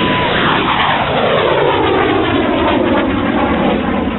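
Rocket motor of a Quick Reaction Surface-to-Air Missile just after launch, a loud rushing roar as it climbs away. A high whine holds steady briefly, then the sound sweeps down in pitch over the next few seconds.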